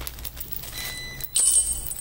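Plastic bag rustling as small metal parts are shaken out. About a second and a half in comes a sharper metallic clink, with a brief high ringing, as the metal handle clamp block and its bolts land on a tile floor.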